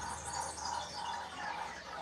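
Faint, indistinct voices over low room noise in a boxing venue, with no clear words and no single event standing out.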